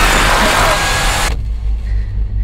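A loud rush of noise that cuts off abruptly a little over a second in, over a deep low rumble that carries on: trailer sound design.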